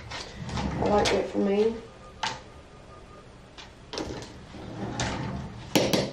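Indistinct voice in short stretches, with a few sharp clicks and knocks of things being handled, one about two seconds in and a louder pair near the end.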